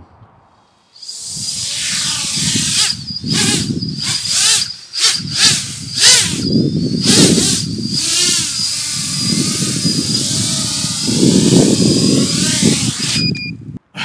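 iFlight Nazgul XL10 10-inch FPV quadcopter spinning up about a second in and hovering low on its large three-blade propellers: dense prop noise with a steady high whine on top, swelling and dipping as the throttle changes. The motors cut off suddenly just before the end as it sets down.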